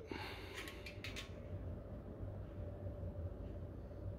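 Quiet room tone with a steady low hum, and a few faint light clicks in the first second or so.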